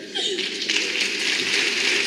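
Theatre audience applauding: the clapping swells about half a second in and then holds steady, with a few voices briefly at its start.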